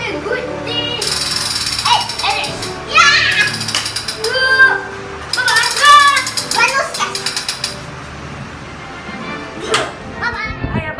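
Battery-powered toy assault rifle firing its electronic rapid-fire sound effect in three bursts, the last and longest about two and a half seconds, with a child shouting over it.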